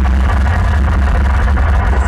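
Deep, steady low rumble of a pre-show intro soundtrack played loud over an arena PA system.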